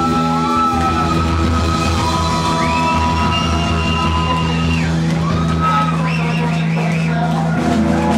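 Live rock band playing loud and unbroken. Long held high notes slide up and down between pitches over a steady low drone.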